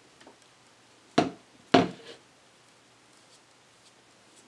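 Two short, loud knocks about half a second apart, over quiet room tone.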